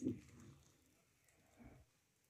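Near silence: room tone, with a short click and a brief soft sound at the very start.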